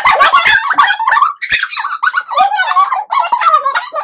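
Two women laughing loudly together, high-pitched and almost without pause.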